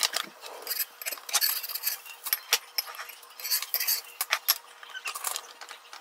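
Kitchen clatter: a run of short, light clinks and taps as dishes and utensils are handled around an enamel pot, with a faint steady hum beneath.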